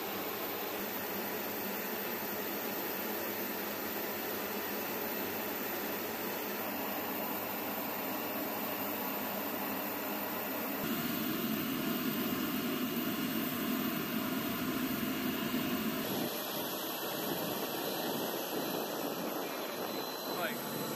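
Steady roar of aircraft engine noise on a flight line, an even hiss-like wash of sound with a faint whine in it. It shifts abruptly twice, louder in the middle stretch.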